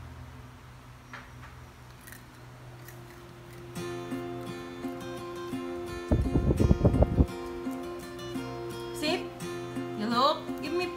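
Background music with acoustic guitar that comes in about four seconds in. Around six seconds there is a loud, rapidly pulsing sound lasting about a second.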